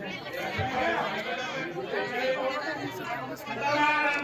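Several people talking at once, their voices overlapping into a steady chatter with no single clear speaker.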